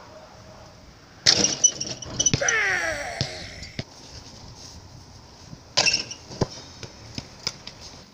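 Basketball striking the metal rim and backboard with a ringing clang about a second in and again near six seconds, with smaller sharp knocks between. After the first clang comes a brief sound that falls in pitch.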